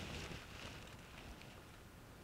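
Quiet room tone during a pause in speech: a faint low hum and hiss, with the last of a voice's reverberation dying away at the start.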